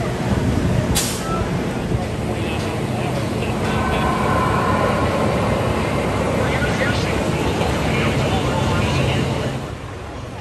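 Fury 325, a Bolliger & Mabillard giga coaster, with its steel train running along the track: a loud, steady rumble of wheels on rails. The sound drops away just before the end.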